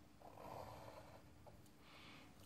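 Near silence, with one faint, short breath out through the nose starting just after the beginning and lasting about a second.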